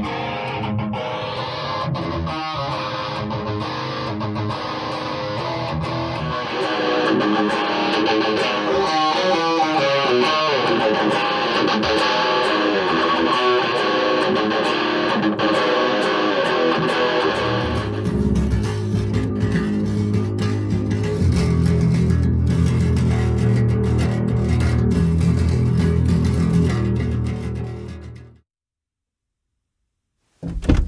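Electric guitar playing a black metal song. Near the middle the higher guitar thins out and a lower, bass-heavy part carries on. The music cuts off abruptly about two seconds before the end.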